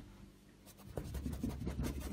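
Filbert brush scrubbing acrylic paint onto canvas in quick, scratchy strokes, starting a little over half a second in.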